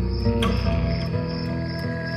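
Crickets chirping in a steady night ambience under background music of sustained, held notes.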